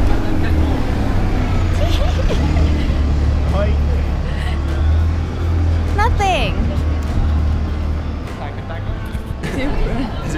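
A bus engine rumbling steadily close by in street traffic, with general street noise; the rumble stops about eight seconds in.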